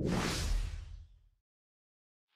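A whoosh sound effect with a low rumble beneath it, swelling and then fading out about a second in.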